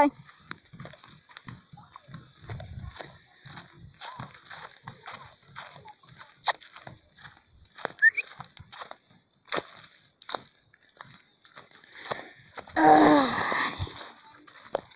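Footsteps through grass and brush on a slope: uneven rustles and crunches over a steady high hiss. About a second before the end, a brief loud call with a clear pitch rings out.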